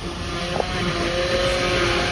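Tractor and trailed forage harvester running steadily in a constant drone while cut grass is blown into a silage trailer.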